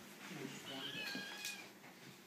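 Nine-week-old kitten meowing: one drawn-out, high-pitched call lasting about a second, starting just under a second in.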